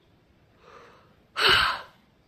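A person's breath drawn in softly, then a loud, frustrated huff of air let out about a second and a half in: an exasperated sigh over hard homework.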